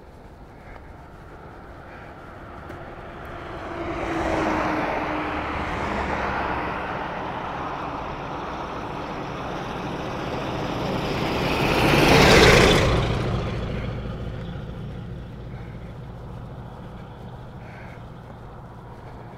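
Road traffic passing close on an open highway: a vehicle goes by about four seconds in, then a tank truck overtakes about twelve seconds in, the loudest moment, its tyre and engine noise swelling and fading away.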